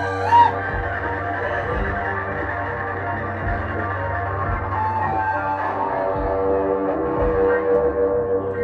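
Live indie-electro band playing an instrumental passage: electric guitar and synthesizer keyboard over a steady low bass tone, with a short, loud pitched blip that rises and falls about half a second in.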